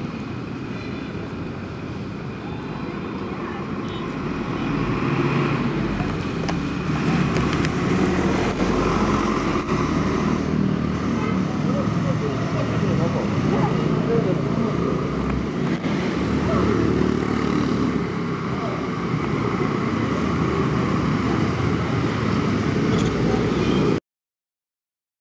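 Busy street ambience: many people talking at once over motor traffic, growing louder about five seconds in.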